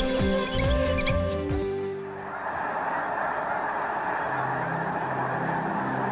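Theme music ends about two seconds in, then the continuous, dense honking din of a huge flock of snow geese calling together.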